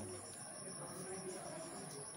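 Insects chirring steadily at a high pitch.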